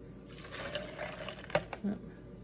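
A pink drink is poured from a glass over ice into a plastic tumbler. The liquid splashes and fills for about a second, rising slightly in pitch as the cup fills. A couple of light clicks follow near the end.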